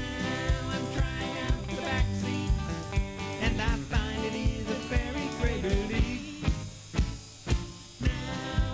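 Live country gospel band playing: electric guitar, electric bass and a drum kit keeping a steady beat of about two strokes a second. Near the end the band thins out, leaving a few drum hits.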